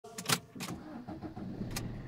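Car engine started with the push button: a few sharp clicks in the first moments, then the engine turning over and settling into a low, steady idle.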